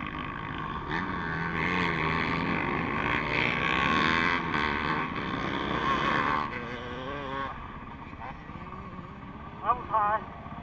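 Motocross dirt bike engine heard from on board, revving up and down as it is ridden along the track, mixed with wind noise. About six and a half seconds in it drops off to quieter, lower running as the bike slows.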